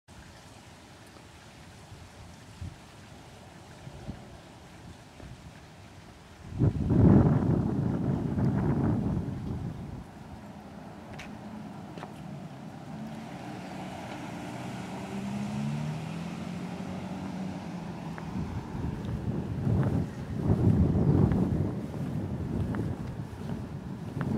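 Wind buffeting the camera's microphone in two gusts, one about six seconds in lasting a few seconds and another near the end, over quiet outdoor background. In between comes a faint wavering engine hum, like a vehicle passing at a distance.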